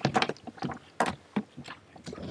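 Handling noise on a table: a string of sharp clicks and knocks as a laptop's projector cable is unplugged and moved between laptops.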